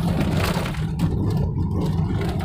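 Car engine and road drone heard inside the cabin as the learner shifts up into fourth gear after raising the revs, with rustling and a couple of light knocks from handling the gear lever.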